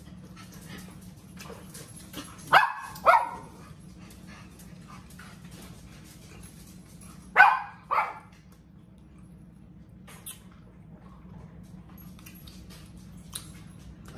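A dog barking: two pairs of short, sharp barks about half a second apart, the second pair about five seconds after the first, over a steady low hum.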